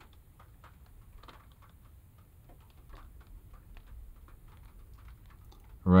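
Scattered raindrops tapping on a car's windshield and roof, heard from inside the car as faint, irregular light ticks over a low steady rumble.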